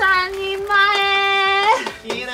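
A high-pitched woman's voice holding one long, steady sung note for about a second, just after a short spoken phrase.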